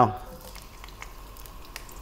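Faint sizzle of minced garlic and sliced ginger going into hot oil in a wok, with a few light clicks of a wooden spoon against the pan.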